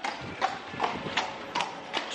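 A carriage horse's hooves clip-clopping on cobblestones as a horse-drawn carriage passes, an even beat of about two to three hoof strikes a second.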